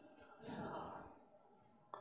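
A faint, short breath at the microphone about half a second in, in an otherwise near-silent pause between spoken sentences.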